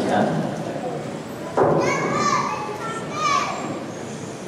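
A child's high-pitched voice cries out twice, starting suddenly about a second and a half in and again near the end, echoing in a large hall over background murmur.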